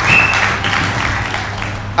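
Audience applauding, a dense patter of hand clapping that dies down toward the end.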